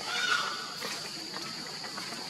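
A macaque's short call: one flat, thin tone lasting about half a second near the start, over a steady high-pitched background hum.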